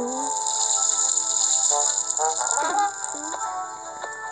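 Background music from a children's animated story app, with held notes, a hiss above it and a short cluster of sliding sounds a little past halfway.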